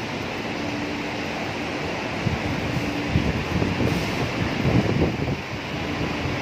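Steady noisy hum of an enclosed parking garage with a faint steady tone, and from about two seconds in uneven low rumbling of wind noise on the microphone as the camera moves.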